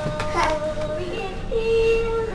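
Electronic plush toy playing a sung tune: a few steady held notes stepping between pitches, with a long held note in the second half.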